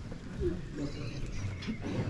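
Faint, scattered speech and murmuring voices over a low room hum, with no other clear sound.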